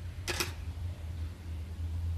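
A quick double click about a quarter second in, over a steady low hum.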